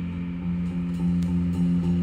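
Live band of guitar, bass guitar and drums playing a soft instrumental passage without vocals: repeated held notes with short breaks between them and light cymbal strokes.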